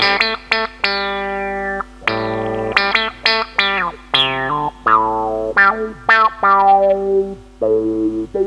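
Electric guitar played through a Source Audio Spectrum envelope filter pedal: a run of plucked notes and chords, each opening a wah-like filter sweep that falls in pitch as the note dies away. The pedal's Freq knob, which sets where the filter sweep starts, is being adjusted.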